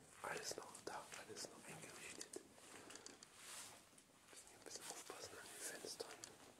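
Quiet whispered speech in short breathy phrases, with a few faint clicks.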